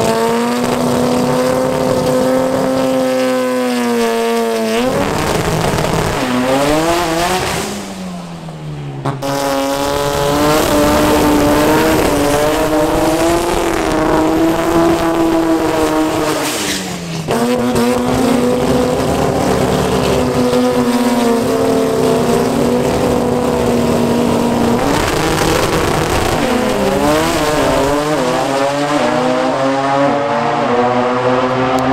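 Drag-race Toyota Starlet engines held at high, steady revs during smoky burnouts, tyres spinning on the pavement. Revs drop off and return between the held stretches, and near the end an engine revs up and down.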